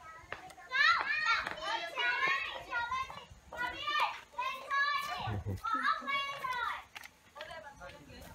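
Children's high-pitched voices chattering and calling out, with only short breaks.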